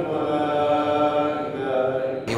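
An imam's solo voice chanting the Eid prayer recitation in long, held melodic notes.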